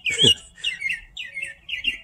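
A bird singing a fast, unbroken run of short chirping notes, several a second. Near the start there is a brief low falling sound that is a person's voice.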